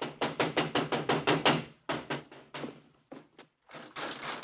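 A rapid run of sharp knocks on a door, about seven a second for under two seconds. A few shorter, scattered knocks follow.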